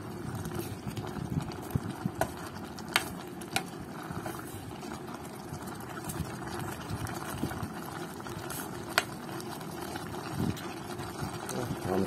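Beef stew simmering in an electric pot, a steady bubbling hiss. A spoon stirs it, with several short sharp clicks against the pot.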